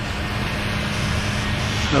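A motor vehicle running close by: a steady engine hum under a haze of road noise, growing slightly louder.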